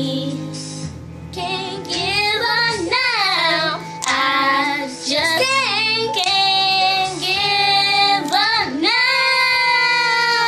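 Two young girls singing a gospel song together, drawing out long held notes with vibrato.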